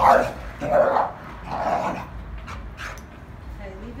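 Dogs barking and growling in rough play: three loud barks in the first two seconds, less than a second apart, then quieter scuffling.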